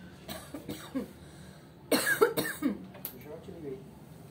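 A person coughing, a short burst of two or three coughs about two seconds in, with brief quiet speech-like sounds before and after.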